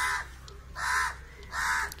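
A crow cawing three times, short raspy calls a little under a second apart.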